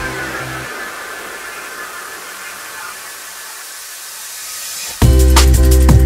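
Liquid drum and bass track in a breakdown. The bass and drums drop out, leaving a hiss of noise and a slowly falling tone. About five seconds in, the full beat and deep bass come back in loudly.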